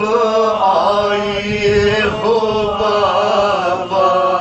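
A man's solo voice chanting an Urdu lament (noha) through a microphone, in two long melismatic phrases of held, wavering notes with a brief break about halfway through.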